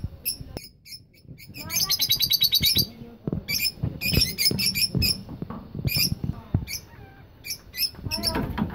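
Lutino peach-faced lovebirds chirping shrilly: a fast run of chirps about two seconds in, then sharp single chirps on and off.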